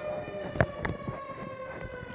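Electronic house siren sounding a steady, unbroken tone with overtones, with two short knocks about half a second and just under a second in.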